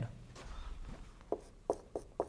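Dry-erase marker writing on a whiteboard: a few short, separate strokes in the second half.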